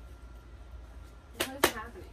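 Quiet room with a low hum, then about one and a half seconds in a short two-part burst of a woman's voice, like a quick laugh or exclamation.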